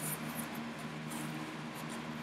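Faint rustling and scraping of a cardboard book mailer being opened and a book slid out, a few soft brushes spread through, over a steady low hum.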